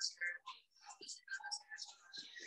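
Faint snatches of whispered speech, broken into short fragments.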